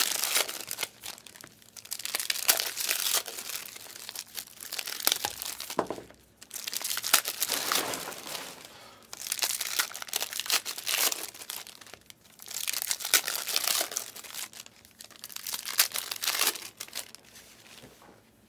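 Foil trading-card pack wrappers being torn open and crumpled by hand. The crinkling comes in about six separate bursts, a couple of seconds apart.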